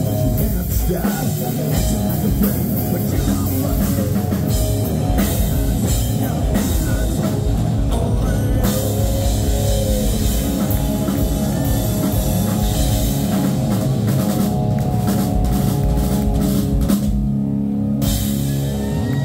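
Rock band playing live through a PA: drum kit, electric guitar and bass guitar.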